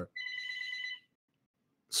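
A short electronic beep: one steady tone lasting just under a second, which cuts off suddenly into dead silence.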